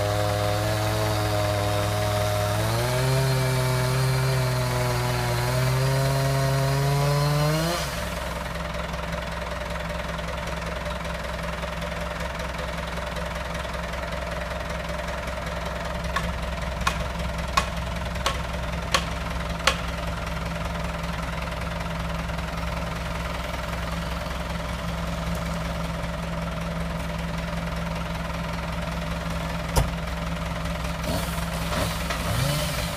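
A two-stroke chainsaw runs under load, its pitch rising twice, then cuts off about eight seconds in. Under it a tractor's diesel engine idles steadily throughout, and a little past the middle six sharp knocks come about two-thirds of a second apart.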